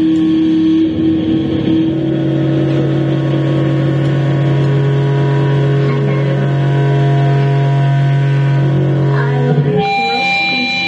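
Amplified electric guitar sustaining a long droning note through the amp: a higher held tone gives way within the first two seconds to a lower steady drone, which cuts off just before the end as the band starts playing again.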